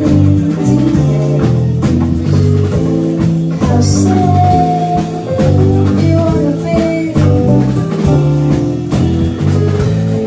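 A live band of electric bass guitar, electric keyboard and drum kit playing a song together, with a steady moving bass line and held keyboard chords. A cymbal crash comes about four seconds in.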